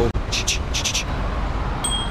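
City street traffic noise, a steady low rumble. In the first second there are five short hissy sounds, and near the end a brief thin high ring.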